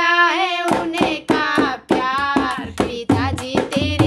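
Sohar folk song: a sung voice over hand percussion. The drumming drops out while the voice holds a long note at the start, then comes back in sharp strokes under the melody.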